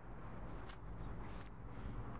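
Footsteps brushing through tall weeds and grass: faint rustling, with a couple of brief swishes near the middle, over a low steady rumble.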